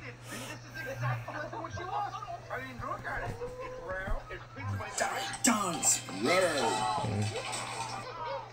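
Children's cartoon soundtrack: background music with snatches of voices gliding up and down in pitch, growing busier in the second half.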